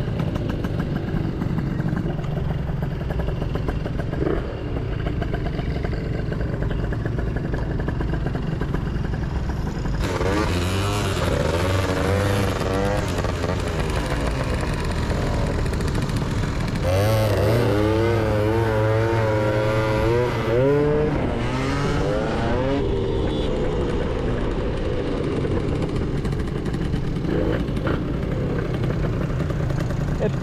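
Two-stroke scooter engines under way through traffic, running as a steady drone under wind noise. Twice, from about ten seconds in and again from about seventeen to twenty-two seconds, one engine revs up and down in waves as the throttle is worked.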